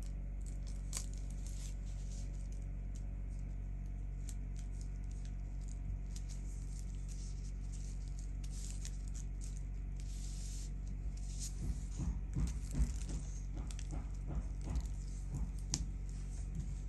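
Tissue paper crinkling and rustling under gloved fingers as it is smoothed down onto a glued board, with a cluster of light taps and pats near the end. A steady low hum runs underneath.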